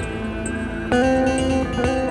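Live ensemble music led by a hollow-body electric guitar: held notes ringing over a sustained backdrop, with a louder new note plucked about a second in and a slight bend in pitch near the end.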